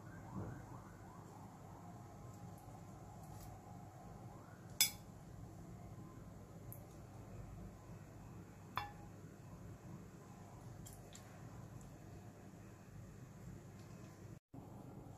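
Metal kitchen tongs clinking against the dishes as sauce-coated chicken wings are lifted from a pan onto a ceramic plate: two sharp clinks, a louder one about five seconds in and a softer one about nine seconds in, over a faint steady low hum.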